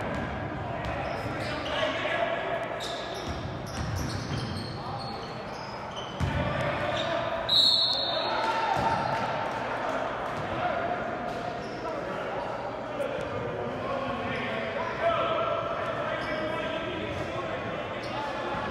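Basketball bouncing on a hardwood gym floor, mixed with players' shouts and spectator voices, echoing in a large gym. A short shrill referee's whistle blast about seven and a half seconds in is the loudest sound.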